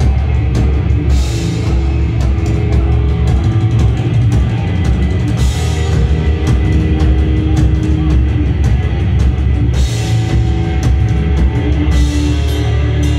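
Heavy metal band playing live at full volume: fast, dense drumming under heavy guitars and bass, with a cymbal crash about a second in, another mid-way and another near the end.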